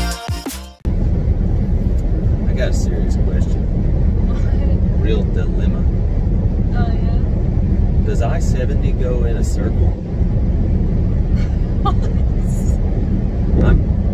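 Steady low road and wind noise inside a Tesla Model 3's cabin at highway speed, with faint snatches of voice over it. Electronic background music cuts off in the first second.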